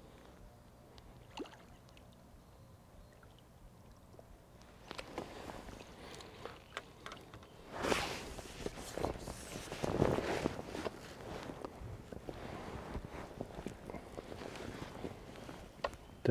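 Quiet for the first few seconds, then a hooked sea trout splashing in a landing net at the river's surface, with water sloshing; the loudest splashes come about eight and ten seconds in as the net is lifted out of the water.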